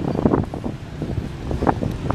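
Wind rumbling on a handheld camera's microphone over outdoor street noise, with a few brief knocks.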